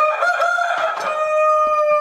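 A rooster crowing once: one long call that bends up slightly at the start and then holds its pitch for about two seconds.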